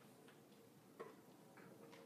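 Near silence: faint room tone with a few soft clicks, the sharpest about a second in.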